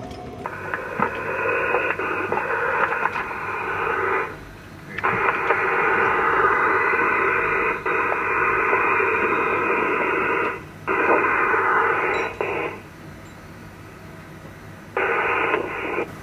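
Radio communications channel hiss with no one speaking, as the loop is keyed open. It comes in four stretches that cut in and out sharply.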